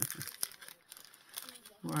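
A stack of printed paper cutouts rustling and crinkling as it is handled, with scattered light crackles.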